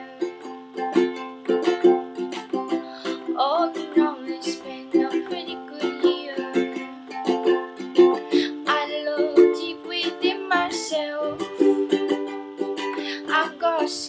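Ukulele strumming chords in a steady rhythm, an instrumental passage between sung lines.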